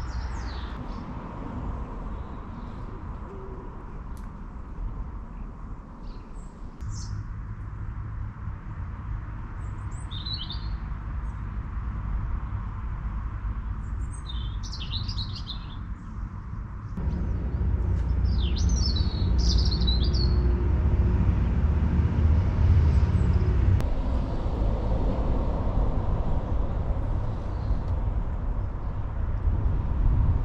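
Outdoor ambience: small birds chirping in a few short clusters of calls over a steady low rumble, which grows louder in the second half.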